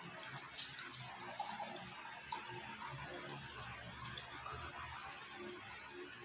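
Water poured from a plastic pitcher into a glass tumbler, a faint steady trickle.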